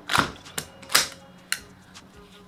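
Airsoft gas blowback rifle's charging handle and bolt carrier being pulled back and locked open: four sharp metallic clicks and clacks, the loudest about a second in.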